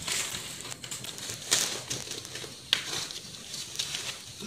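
Rustling and handling noise with a few sharp knocks, one about a second and a half in and another near three seconds.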